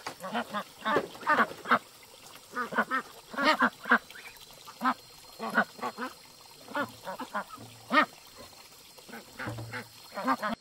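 Ducks quacking: short calls, singly and in quick runs, all through, loudest about three and a half and eight seconds in.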